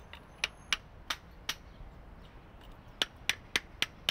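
Hammer striking a chisel on stone in sharp metallic taps, four in the first second and a half and four more near the end, about three a second, as debris is chipped out during renovation of the stone memorial.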